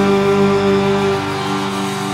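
A rock band's closing chord, led by guitar, held and ringing out and slowly fading at the end of a live song.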